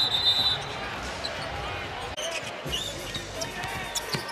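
Basketball game sound on a hardwood court: a ball bouncing and short sneaker squeaks over the steady murmur of an arena crowd.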